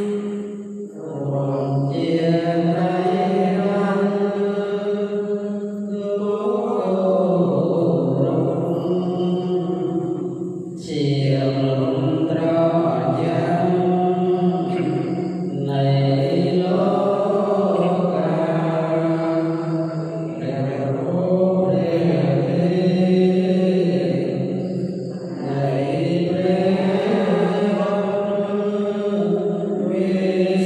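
Theravada Buddhist monks reciting evening devotional chants together, male voices held on a few steady notes. The recitation runs in phrases of about five seconds with short breaks for breath between them.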